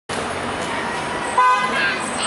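A short car horn toot about one and a half seconds in, over steady street traffic noise.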